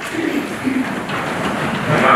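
Rustling and shuffling of a church congregation settling into the pews, with a faint low voice near the start.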